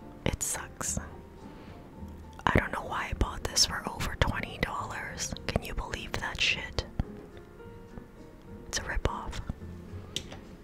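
A woman whispering close to a studio microphone, ASMR-style, with sharp clicks and taps scattered between the whispers and a quieter stretch near the end.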